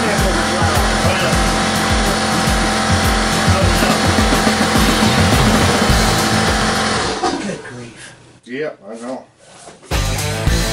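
A loud electric motor running steadily with a dense whirring noise, over background music with a steady beat; it stops about seven seconds in, leaving quieter sounds.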